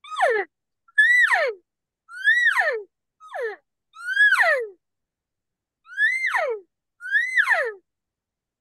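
Diaphragm mouth reed elk call blown hard with a hand cupped at the mouth, giving seven elk mews about a second apart. Each mew rises briefly and then falls steeply in pitch, and the fourth is shorter than the rest. The extra air force makes the calls louder.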